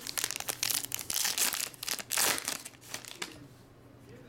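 Foil wrapper of a trading-card pack crinkling and tearing as it is pulled open by hand, a dense crackle that dies down after about three seconds.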